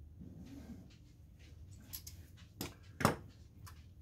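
Metal pliers being handled and set down on a hard tabletop: a few light clicks, the two loudest about two and a half and three seconds in, over faint room hum.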